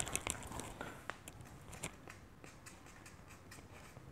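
Metal pipe rolled by hand over a slab of modelling clay on a wooden tabletop, making a few sharp clicks and knocks in the first two seconds, then only faint scattered ticks.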